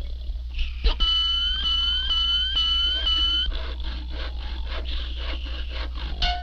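Early-1930s cartoon soundtrack sound effects: a high shrill whistling tone with a swooping note repeating about twice a second, then a rapid run of squeaky, raspy strokes about four a second, over the old soundtrack's steady low hum.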